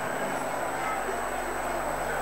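Steady crowd noise in a football stadium, an even murmur with no single event standing out.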